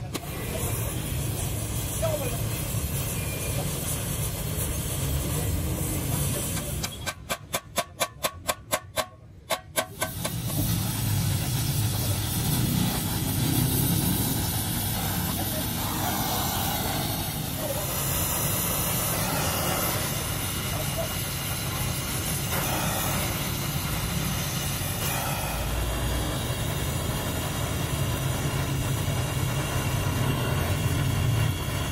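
Gas welding torch hissing steadily as its flame works along the seam of a steel muffler's end cap. About seven seconds in the steady noise drops out for a run of rapid, even knocks lasting about three seconds, and voices can be heard in the background.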